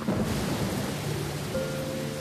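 Steady rain that comes in suddenly at the start, over soft background music with low held tones.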